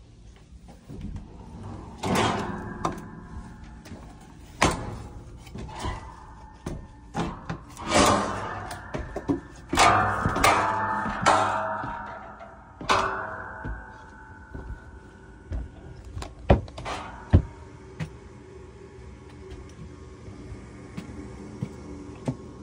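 Knocks, clatters and creaks of an attic access being opened and climbed into. There is a busy run of bangs and creaking in the first half, and two sharp knocks a few seconds before the end.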